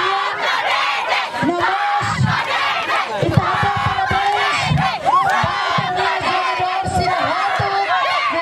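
A crowd of supporters cheering and shouting in celebration of a win, many voices at once.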